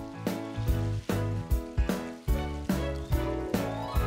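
Upbeat background music with a steady drum beat and bass line.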